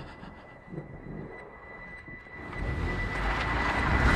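Film-trailer sound design after a gunshot: a thin, steady, high ringing tone held throughout, the kind used for ringing ears, over a low rumble that swells from about halfway through.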